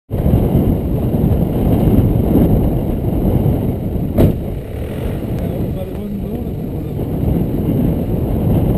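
Nissan Navara D22 4WD's engine running, heard as a steady, muffled low rumble through the bonnet-mounted camera, with one sharp click about four seconds in.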